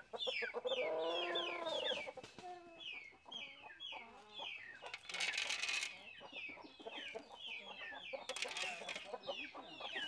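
Free-range chickens calling around scattered corn: a steady run of high, falling peeps throughout, a longer drawn-out call that rises and falls about a second in, and two short rasping bursts midway and near the end.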